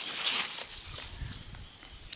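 Soft rustling of leaves and branches being brushed, loudest in the first half second and then fading away.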